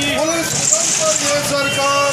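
Men's voices carrying over busy street noise, with a brief patch of hiss about halfway through.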